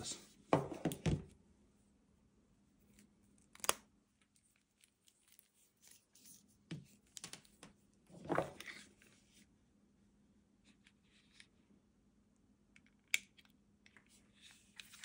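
Handling sounds of a DJI Osmo Mobile 6 gimbal and its USB charging cable as the cable is fitted for charging. There are scattered soft clicks and rubbing, with a sharp click a few seconds in and another near the end.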